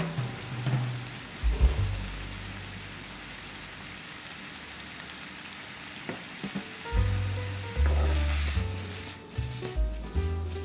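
Thin-sliced beef and onions sizzling in teriyaki sauce in a frying pan. Background music with low bass notes plays over it, louder from about seven seconds in.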